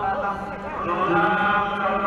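Devotional chanting in long held notes, with a slide in pitch about a second in.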